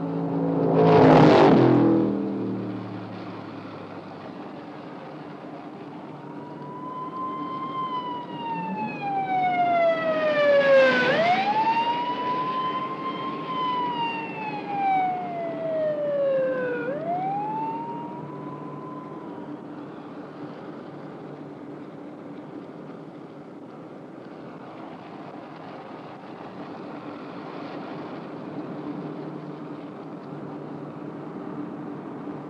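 Police siren wailing in slow rising-and-falling sweeps for about 13 seconds, heard from inside a moving car over a steady drone of engine and road noise. Near the start there is a loud brief rush of a vehicle passing close by.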